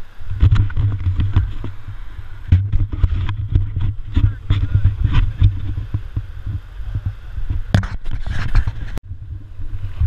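Wind buffeting an action camera's microphone in low, irregular gusts, with knocks and bumps from the camera being handled. The sound briefly cuts out about nine seconds in, then the rumble resumes.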